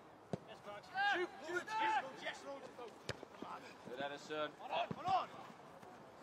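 Players' shouts and calls carrying across an open football pitch, in two bursts, with a few sharp thuds of the ball being kicked.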